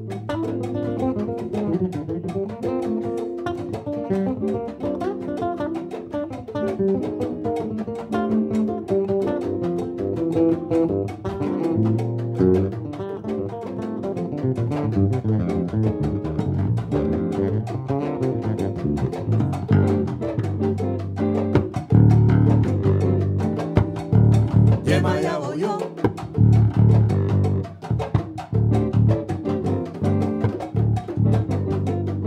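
Six-string electric bass played through an amplifier in an unaccompanied solo: busy lines mixing melody and chords in the middle register, with deeper low notes taking over in the last third.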